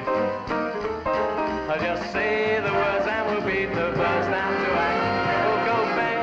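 Upbeat live band music led by a grand piano played energetically.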